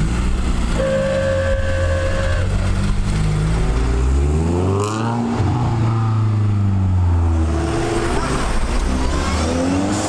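Car engines as several cars pull away one after another, one revving up sharply about halfway through and then fading as it passes and drives off.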